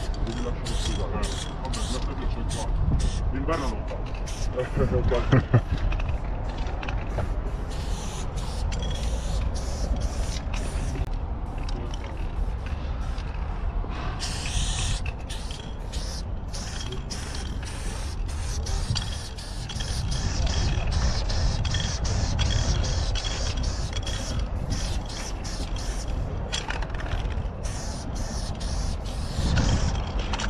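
Aerosol spray can hissing in repeated bursts, stopping and starting as paint is laid onto a concrete wall, over a steady low rumble.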